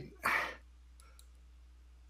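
A short breath near the start, then two faint computer-mouse clicks about a second in, over a low steady electrical hum.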